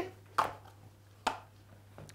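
Two brief, sharp knocks about a second apart, over a faint steady low hum.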